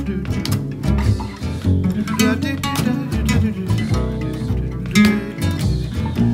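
Instrumental break of a jazzy acoustic song: acoustic guitars picking and strumming over a plucked upright bass, with sharp percussive hits throughout.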